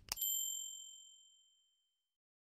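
A mouse-click sound effect followed by a single bright bell ding that rings and fades away over nearly two seconds: the notification-bell chime of a subscribe-button animation.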